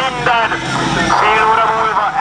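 A young man's voice amplified through a handheld megaphone, calling out in short loud phrases.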